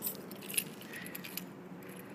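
Light jingling and scattered sharp clicks, over a steady low hum.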